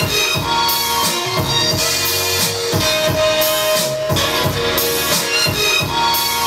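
Hip-hop beat playing from an Akai MPC 1000 sampler: regular drum hits under a chopped, pitched sample.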